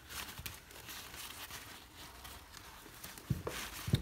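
Fabric of a nylon drawstring bag rustling and its cord rubbing as hands loosen the drawstring, with faint crinkles throughout and a soft thump near the end.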